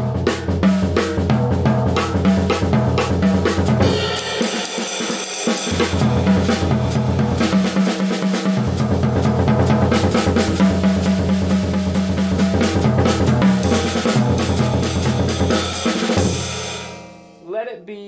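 Jazz drum kit played with sticks: eighth-note phrases moved around the snare, toms and cymbals over steady time, with a bright cymbal wash from about four seconds in. The playing stops near the end and the cymbals ring out.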